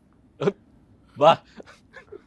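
Two short vocal calls, a brief one about half a second in and a louder one with a bending pitch just over a second in.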